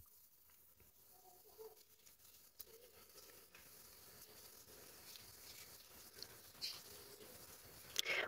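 Near silence, with faint soft rustling and a few light ticks from cotton yarn being worked with a crochet hook, a little clearer near the end.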